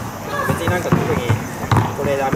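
A basketball dribbled on an outdoor asphalt court, several sharp bounces at an uneven pace, with voices talking in the background.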